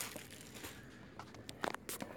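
Quiet handling noise of things being moved about in a cardboard box, with a few short sharp clicks and taps in the second half.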